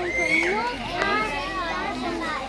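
Children's voices: several excited voices talking and calling over one another, with one high call about a quarter-second in.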